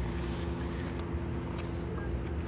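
Steady low background hum with faint hiss, unchanging throughout, in a pause between spoken lines.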